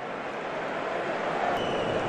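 Stadium crowd noise from a large football crowd, a steady wash of sound that grows a little louder.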